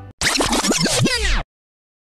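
Record-scratch sound effect: a quick run of turntable scratches with the pitch swooping up and down, lasting just over a second and then cutting off suddenly.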